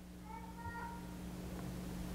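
Faint room tone with a steady low electrical hum. A brief, faint, high-pitched squeak comes a quarter second in and lasts under a second.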